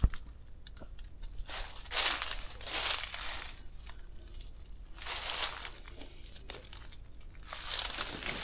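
Footsteps crunching through dry fallen leaf litter, an irregular rustle roughly every second. A sharp click right at the start is the loudest sound.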